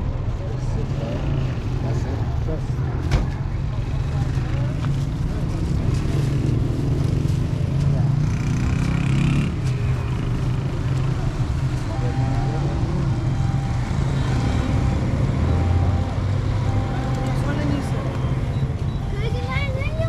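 Steady low rumble of a motor vehicle engine running close by, with people talking over it.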